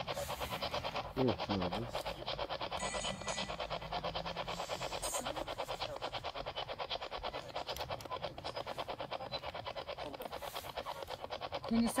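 Ghost-hunting spirit box sweeping the radio band, giving a rapid, even chop of static at about eight pulses a second while the group waits for a voice to come through it.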